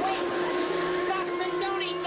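Bagpipes wailing as they are bitten and wrestled: a steady drone holds underneath while higher pipe notes slide up and down in pitch.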